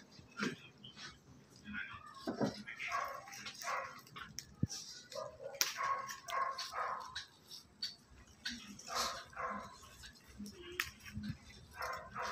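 A dog barking in short, repeated barks throughout.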